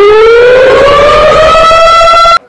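A man's long, very loud scream, held on one breath, that slowly rises in pitch and levels off near the end.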